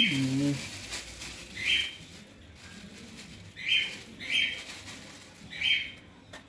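Clear plastic bag rustling as bleaching powder is shaken out of it, with a short high bird call heard four or five times at irregular gaps.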